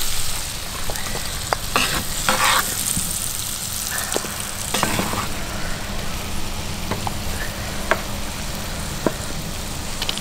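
Potatoes, onions and bacon sizzling in a hot cast iron skillet, a steady hiss, with scattered light clicks and taps of metal tongs and utensils as food is served.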